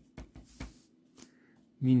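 Pen scratching on paper in a few short strokes as a word is handwritten.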